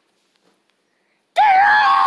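A child's loud, high-pitched scream, held for about a second and dropping in pitch at the end, starting a little after halfway in: a dramatic reading of Piggie's cry "Gerald!"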